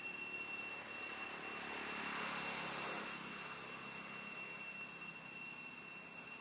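A distant engine, swelling to a broad rushing sound about two seconds in and fading away again, over a steady high-pitched whine of forest insects.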